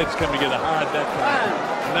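Speech: voices talking over one another on a TV boxing broadcast, with arena crowd noise underneath.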